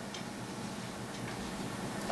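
Faint steady hiss of room and background noise, with faint ticks.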